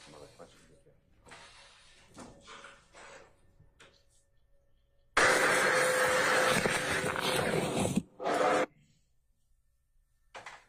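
A loud, steady hiss-like noise from a recording played back over the courtroom speakers. It starts suddenly about five seconds in, cuts off about three seconds later, and is followed by a short second burst as playback is started and stopped.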